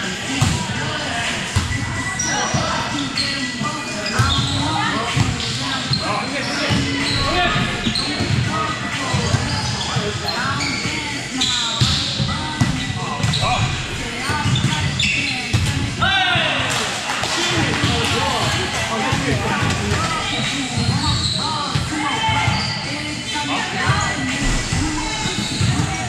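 Volleyball game in a gym: a ball is struck and bounces on the floor several times, with players' voices calling and chattering throughout.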